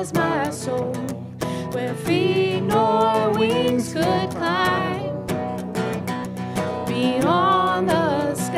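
Live worship band performing a hymn: voices singing the melody over strummed acoustic guitars, with a trombone in the band.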